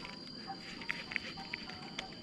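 Faint outdoor ambience: a steady high-pitched whine under scattered short chirps.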